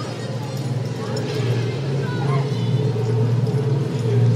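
Steady low hum of a Red Car Trolley streetcar, with faint voices in the background.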